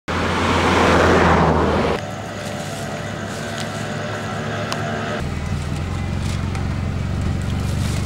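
A motor vehicle's engine running on a street. A loud rushing noise fills the first two seconds, then a steady engine hum carries on with a low pulsing from about five seconds in.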